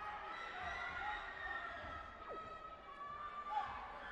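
Indistinct chatter and calls from several people in a large sports hall, with a brief louder call or shout near the end.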